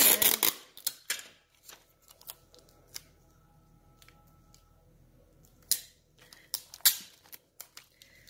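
Clear packing tape crackling and clicking as it is handled and pressed down over a paper luggage tag, loudest right at the start and in two short bursts about six and seven seconds in, with scattered small clicks between.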